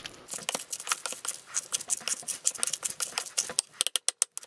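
Metal potato masher working sweet potato mash in a stainless steel saucepan: irregular clicks and scrapes of metal on metal, several a second, with a quick run of clicks near the end.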